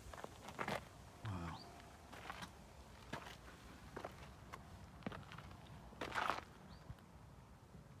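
Faint footsteps of someone walking on a boardwalk and a dirt path, irregular scuffs roughly one a second, with a longer scuff about six seconds in and a short pitched sound about a second in.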